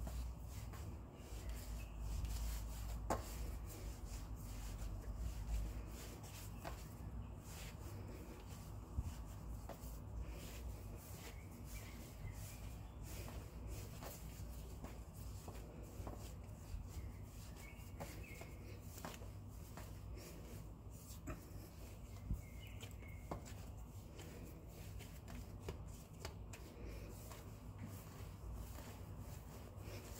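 Hands kneading soft yeast dough on a floured countertop: faint, irregular rubbing and pressing, with light taps and a few sharper knocks as the dough is pushed and turned against the counter.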